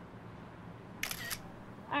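Smartphone camera shutter sound, one short click-burst about a second in, over the low steady hum of a car cabin.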